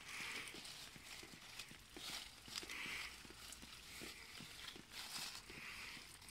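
Faint rustling of strawberry plant leaves, brushed and parted by hand, with small soft ticks and a rustle every second or so.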